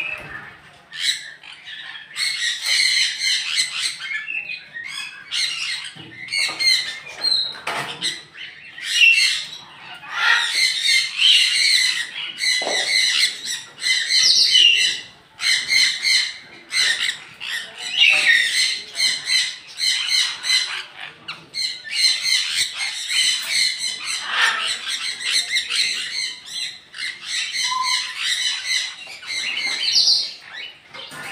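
A flock of small parrots squawking and screeching harshly, many calls overlapping almost without a break.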